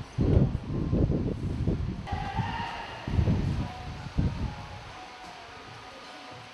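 Gusts of wind buffeting the microphone: irregular low rumbles, loudest in the first few seconds, dying away near the end.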